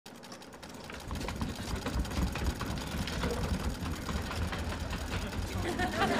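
Sewing machines running with a fast, even clicking over a low mechanical hum. The sound comes up about a second in, with a murmur of voices under it.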